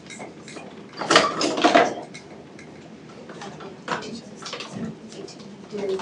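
Clatter and rustling of medical equipment being handled, loudest for about a second, starting about a second in, with scattered smaller clicks and quiet voices in the room.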